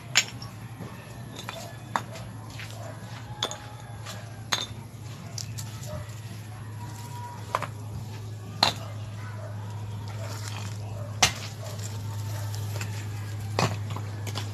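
Chunks of broken concrete and stone knocked and clinked against one another as they are picked up and set down by hand, giving sharp single clacks every second or two over a steady low hum.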